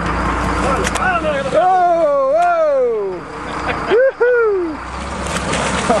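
Excited wordless shouts and whoops, several overlapping, that rise and fall in pitch as a marlin thrashes and splashes at the side of the boat. A steady low hum from the boat's engine runs underneath.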